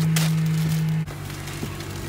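Clear plastic bag crinkling as hands handle the hoodie inside it, over a steady low hum in the car cabin that is loud for about the first second, then drops and carries on more quietly.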